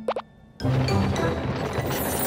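Two quick upward-gliding cartoon plop sound effects, a brief hush, then about half a second in, cartoon background music starts.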